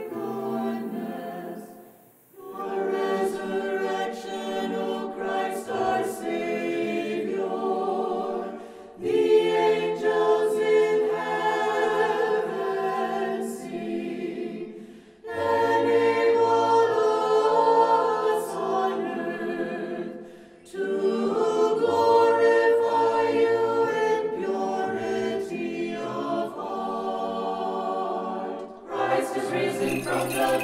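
Choir singing unaccompanied Orthodox church chant in phrases of about six seconds, with brief pauses between them. Near the end, small bells start jingling over the singing.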